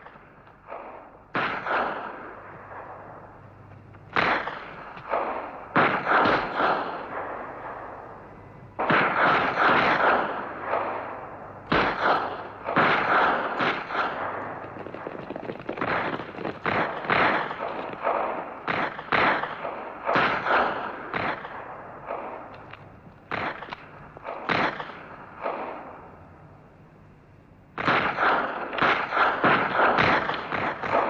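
Scattered rifle fire in a battle: irregular single shots and clusters, each with an echoing tail. A brief lull comes shortly before the end, followed by a dense run of shots.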